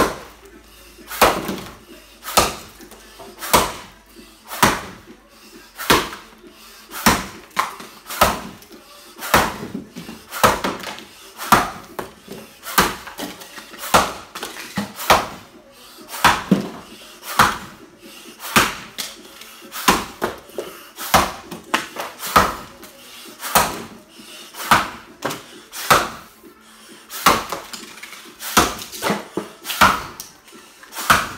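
Axe chopping a white oak log in an underhand chop: a steady run of sharp blows, about one a second, each striking into the wood with a short ring in the room.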